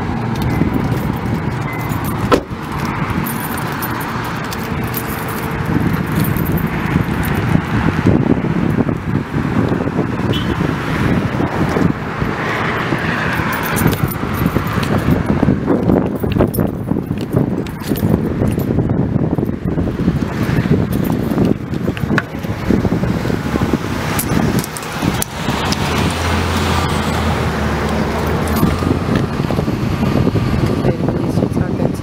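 Steady road traffic noise, with frequent rustles and knocks from a handheld camera being moved about. A low hum comes in near the end.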